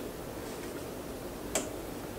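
Low steady background with a single sharp click about one and a half seconds in, from hands working at the front brake caliper while the brake is being bled.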